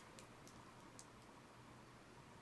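Near silence with a few faint, small clicks: a scrap of latex balloon being tied into knots by hand.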